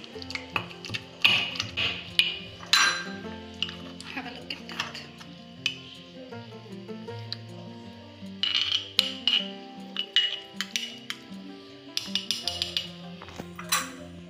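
Stone pestle knocking and grinding in a stone mortar full of wet chutney, with a metal spoon clinking and scraping against the stone, in bursts of sharp knocks near the start, about halfway through and near the end. Background music plays throughout.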